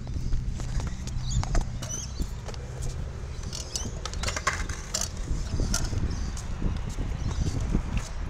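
Wheels rolling over concrete with a steady low rumble. Through the middle there is a run of sharp clicks and rattles, like scooter and board wheels clattering over the ramp joints.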